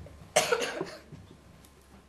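A person coughing once, a short harsh burst about a third of a second in.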